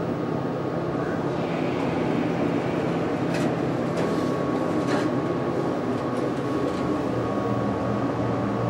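Otis hydraulic passenger elevator with a HydroAccel controller: the car doors slide shut with a few light clicks over a steady mechanical hum, and a faint steady whine joins in the second half as the car starts its run upward.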